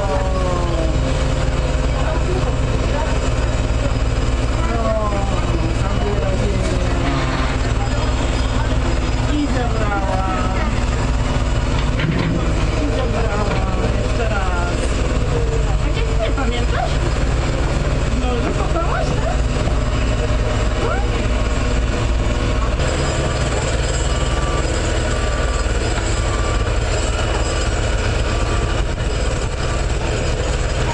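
Hydraulic excavator's diesel engine running at a steady low rumble, with indistinct voices over it.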